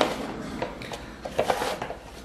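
A few light knocks and scrapes of kitchen utensils being handled, the loudest a short cluster about one and a half seconds in, as bread dough is worked in a ceramic mixing bowl with a wooden spoon and flour is fetched.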